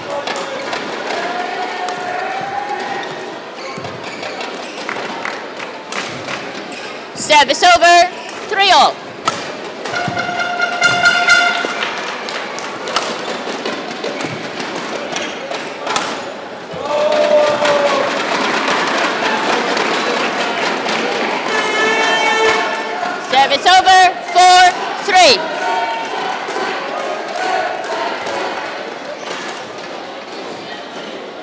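Badminton rally sounds: rackets striking the shuttlecock and players' shoes squeaking on the court floor, over a steady murmur of crowd voices. The loudest bursts of squeaking come about 8 seconds in and again about 24 seconds in, and a swell of crowd noise rises in the middle.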